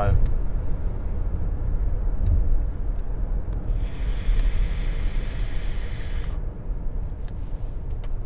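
Steady road and engine rumble inside a moving car's cabin. About three and a half seconds in, a hiss lasting nearly three seconds as an e-cigarette is fired and drawn on.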